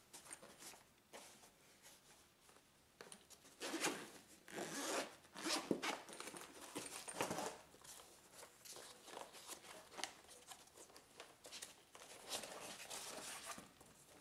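Zipper on a zippered hard-shell carrying case pulled open in several short, faint runs a few seconds in. Quieter handling sounds follow as the case is opened.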